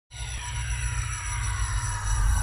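Intro sound effect for an animated logo: a deep rumble under a cluster of tones gliding slowly downward, starting abruptly just after the beginning.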